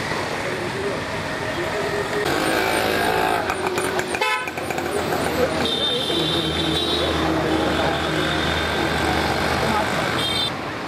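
Busy street traffic with vehicle horns tooting and voices in the background.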